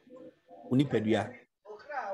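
A person's voice: a short, low vocal sound lasting under a second, about halfway through, with more voice starting near the end.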